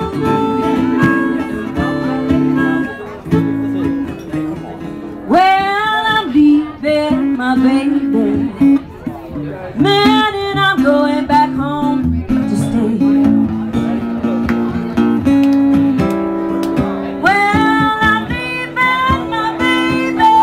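Live slow blues on acoustic guitar, the chords held and strummed, with three sung phrases whose pitch bends up and down over the guitar.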